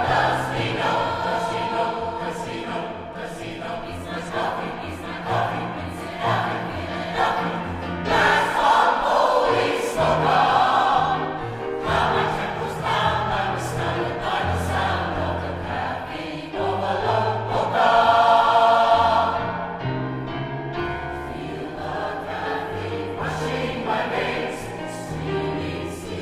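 A choir singing a polka in harmony, with instrumental accompaniment and a bass line that steps from note to note.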